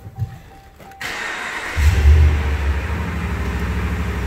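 A 2019 Ram 1500's 5.7-litre Hemi V8 being started: about a second in the starter cranks briefly, the engine catches and flares up, then settles into a steady idle.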